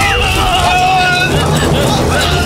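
A song: one voice holds a long, slightly wavering note for about the first second, then gives way to a low rumble with a babble of voices.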